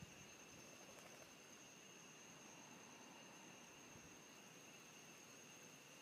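Near silence: faint outdoor background hiss with a thin, steady high-pitched whine.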